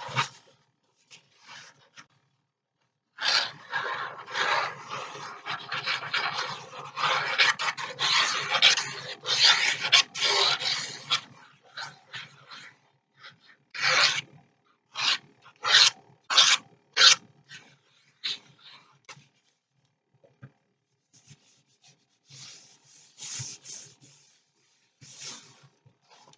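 Paper being rubbed and smoothed by hand, a dry rasping swish. A long stretch of continuous rubbing starts about three seconds in, then comes a run of about five separate short strokes, and a little more rubbing near the end.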